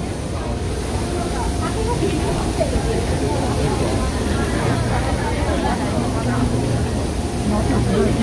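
Taipei MRT train standing at the platform with its doors open while passengers board: a steady hum of the train and station, growing lower and stronger about halfway through, under the murmur of voices.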